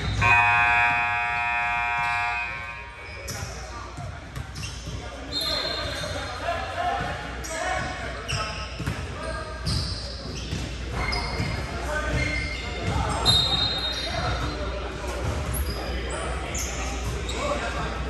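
Scoreboard horn sounding one steady blast of about two and a half seconds, followed by the sounds of a basketball game echoing in a large gym: a ball bouncing on the hardwood court, short high sneaker squeaks and players' voices.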